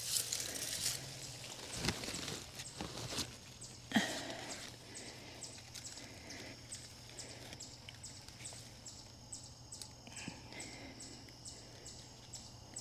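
Rustling of foliage and soil with a few dull knocks as a dug-up limelight hydrangea is pulled from its hole and lifted, busiest in the first four seconds. Through the rest, a faint high chirp repeats evenly about three times a second.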